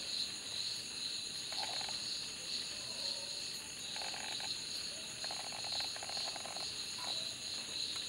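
Faint background chorus of insects and frogs. A steady high-pitched chirring runs throughout, and four short buzzy croaking calls come through, the longest about a second and a half.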